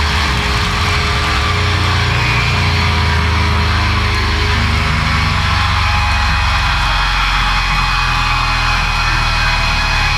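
Live rock band holding the final chord of a song: distorted electric guitars and bass ringing out steadily under a wash of cymbals, with no singing.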